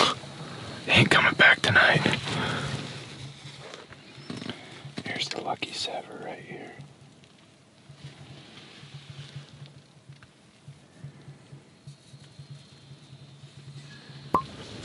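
Hushed, whispered talk in bursts during the first seven seconds, then a quiet stretch with only a faint low hum.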